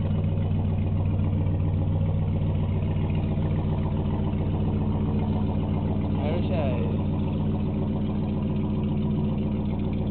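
A boat engine running steadily at an even pitch, with no rise or fall. A voice is heard briefly a little past halfway.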